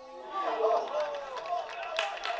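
Men's voices shouting during a football match, with a few drawn-out calls.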